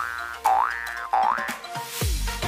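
A cartoon 'boing' sound effect repeated three times, each a quick rising glide, about two-thirds of a second apart.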